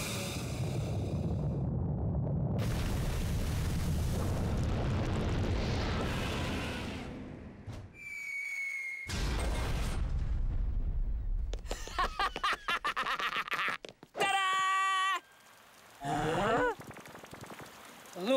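Cartoon sound effect of a ship's boiler blasting out a jet of steam: a long rushing hiss over a deep rumble for about seven seconds, fading out. A brief high whistle follows, then more rumbling, and in the second half a string of short, pitched cartoon effects.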